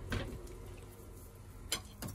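Quiet kitchen background with one light, sharp click about a second and a half in, a metal fork touching a ceramic plate of pancakes.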